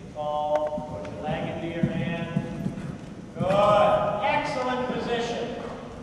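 A horse cantering on arena sand, its hoofbeats heard as dull thuds, under a person's raised voice calling out without clear words, loudest a little past the middle.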